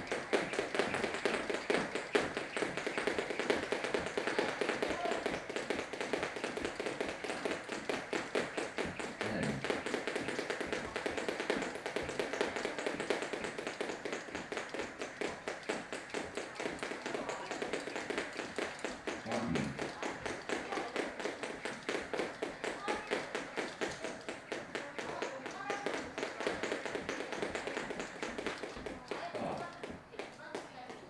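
Two skipping ropes whipping round in speed double-unders, their rapid, continuous taps and slaps on the gym floor mixed with the jumpers' landings. The taps stop shortly before the end.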